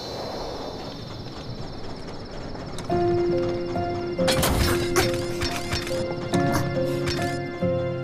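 Soft background music; about four seconds in, a cartoon train speeding past adds a rush of noise and a string of clattering knocks.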